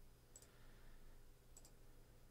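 Faint computer mouse clicks over near-silent room tone: one click, then two quick clicks about a second later.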